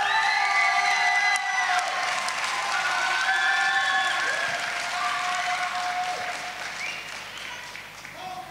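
Audience applauding, with a few long held cheering calls over the clapping. It dies down toward the end.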